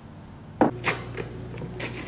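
A microwave oven door shutting with a sharp knock, followed by a few lighter clicks and knocks, as the oven starts a steady low electrical hum to heat water for cup noodles.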